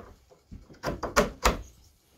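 Metal coat rod knocking against its wooden brackets as it is handled and seated. There are a few quick clunks, the loudest about a second in.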